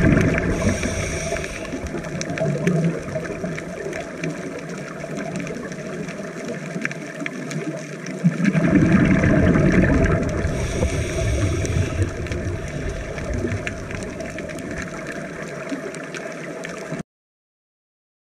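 Scuba diver's regulator breathing heard underwater, muffled through a GoPro housing: two rumbling bubble exhalations, one at the start and one about nine seconds in, each followed by a short hiss, over a steady underwater wash. The sound cuts off suddenly near the end.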